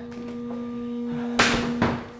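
Suspense film score: a steady held tone slowly swelling in loudness, with two sudden noisy hits about half a second apart near the end.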